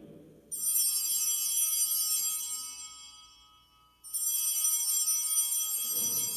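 Altar bells rung twice, the second ring about three and a half seconds after the first, each bright and fading away over about three seconds; they mark the elevation of the chalice at the consecration.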